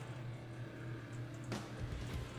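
Handling noise from a ruler held up against an action figure: one light knock about one and a half seconds in, then a low thump near the end, over a steady low hum.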